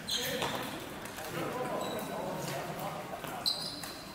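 Several sharp clacks of floorball sticks striking hollow plastic balls and balls hitting the goalie and floor, echoing in a sports hall. The loudest comes about three and a half seconds in, with a short high ring after it.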